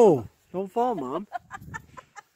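A woman's voice, not words: a loud cry that falls in pitch at the start, then two wavering calls and a run of quick laughs near the end.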